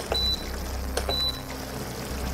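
Tefal induction hob's touch controls beeping twice as the heat is turned up: two short high beeps about a second apart, each after a light click. A steady low hum runs underneath.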